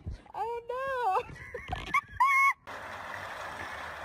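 A few short, high-pitched cries that rise and fall, then, after a sudden cut, the steady rush of flowing river water.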